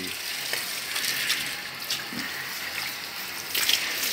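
Water running with a steady hiss.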